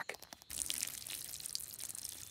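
Cartoon sound effect of a ladybird weeing: a steady, hissing trickle that starts about half a second in.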